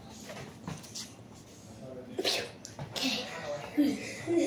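A child's short, sharp vocal burst about two seconds in, like a shout or forceful exhale, then a breathy hiss and a brief voice near the end.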